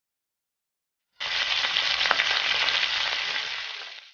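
Curry leaves and whole spice seeds sizzling and spluttering in hot oil in a nonstick kadai, as a South Indian tempering. The sizzle starts abruptly about a second in and fades away near the end.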